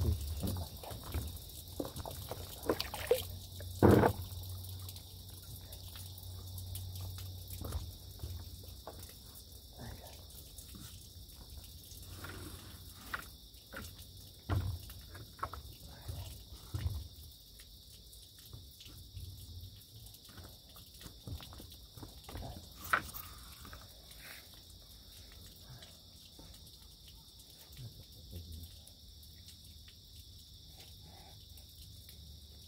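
Knocks and thumps of a person moving about on an inflatable stand-up paddleboard, handling gear, kneeling and getting to his feet, with the loudest thumps at the start and about four seconds in. Behind them a steady, high-pitched chorus of insects keeps going throughout.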